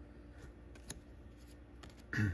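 Faint handling of cardboard trading cards, a few light scrapes and ticks as a card is put aside and the next is picked up, with one sharper tick about a second in.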